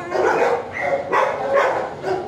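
Dog barking repeatedly, several loud barks in quick succession.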